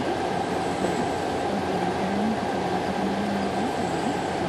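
Heavy diesel machinery, the transporter's power packs and the barge's deck pumps, running steadily in a continuous engine din.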